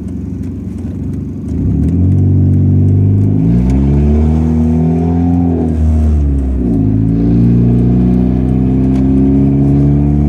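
Car engine heard from inside the cabin as the car pulls away. It picks up about a second and a half in, climbs in pitch, drops back at a gear change around six to seven seconds in, then runs steadily at cruising speed.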